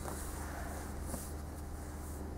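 Steady low hum of the hall with faint rustling of gi cloth and bodies shifting on foam mats, and one faint tick a little over a second in.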